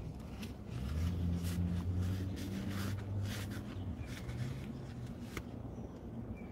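Low steady hum inside a car's cabin, swelling about a second in and easing after three seconds, with scattered rustles and light knocks of handling, such as a work glove being handled.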